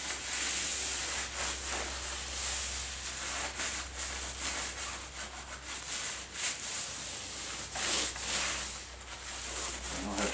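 A cloth rag rubbed over a spoked motorcycle wheel rim in repeated, irregular wiping strokes, cleaning the rim so stick-on balance weights will hold.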